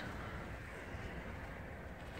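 Faint, steady low rumble of outdoor background noise with no distinct event.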